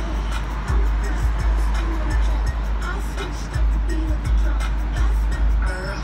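Pop music with a heavy bass beat and a singing voice, playing on a car radio.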